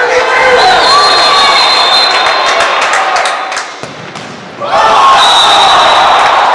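Live sound of a futsal match in an indoor hall: players and spectators shouting, with a few sharp ball knocks around the middle. A long, high, steady whistle tone sounds about a second in and again near the end, and the sound drops briefly just before four seconds.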